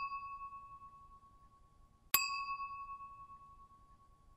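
A bell-like ding sound effect, heard twice: the first already ringing out as it fades, then a second strike about two seconds in, which also rings and dies away.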